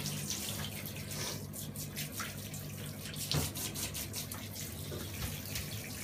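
Handheld shower head running, water spraying onto a wet puppy in a bathtub: a steady rush of water with small splashes and taps scattered through it.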